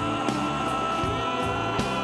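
Live rock band playing a passage without words: a long held note rings over the band, with a couple of sharp drum hits.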